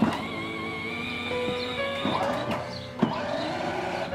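Background music over the steady whine of a child's battery-powered ride-on toy car's electric drive motor as the car moves along.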